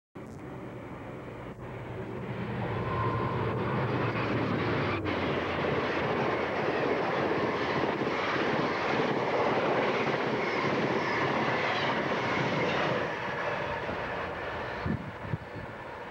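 Amtrak passenger train, led by GE P40 diesel locomotives, passing at speed. The sound builds as the train approaches, then holds as a steady loud rumble of the cars rolling by on the rails, and falls away about 13 seconds in as the train goes off. Wind thumps on the microphone near the end.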